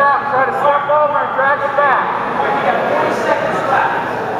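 Speech only: loud, indistinct shouting from men at the mat side, typical of coaches calling to grapplers, over the hubbub of a gym hall.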